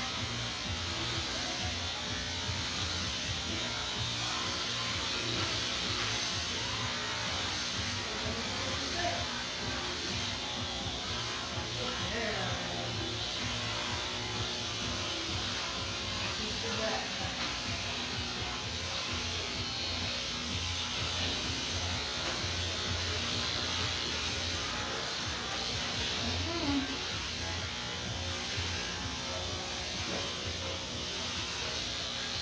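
Electric dog-grooming clippers running with a steady buzz as they cut through a dog's thick coat, with music playing faintly in the background.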